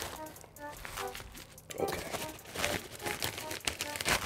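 Pink padded plastic mailer crinkling and rustling in the hands as a stack of sleeved cards is slid out of it, over soft background music of short melodic notes.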